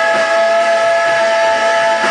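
Live rock band playing loud with electric guitars, one high note held steady over the band.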